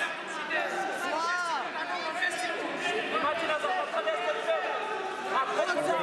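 Several people shouting and calling out at once, their voices overlapping and echoing in a large sports hall: coaches and spectators urging on wrestlers.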